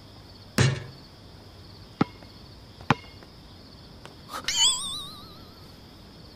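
Crickets chirping steadily at night on an outdoor basketball court. About half a second in, a loud thud as the shot basketball strikes the hoop, followed by two sharp knocks around two and three seconds. Near the end comes a rising, wavering whistle-like tone.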